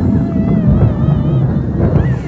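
Loud, low rushing rumble of wind buffeting the phone's microphone over fast-flowing floodwater, with a wavering sung melody over it.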